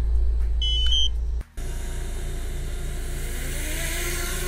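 A few short, high electronic beeps from a DJI Spark drone and its remote controller as they are switched on and link up, over a steady low hum. After a sudden break, a steady low rumble with a faint tone that slowly rises in pitch.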